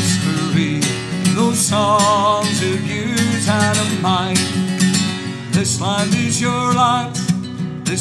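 Acoustic guitar strummed steadily, with a man singing a few long, wavering held notes over it.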